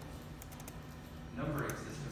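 Computer keyboard typing: a few sharp key clicks. A voice starts about one and a half seconds in and is the loudest sound.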